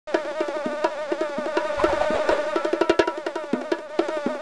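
A housefly buzzing in flight, a steady hum that wavers up and down in pitch.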